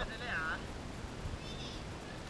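Distant voices calling out briefly, over a steady low rumble of wind on the microphone.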